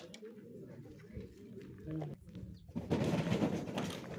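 A bird cooing in a few short, low calls, over faint outdoor background noise that grows louder near the end.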